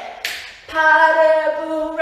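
A woman's voice singing one long steady note, starting about a third of the way in after a short breathy sound.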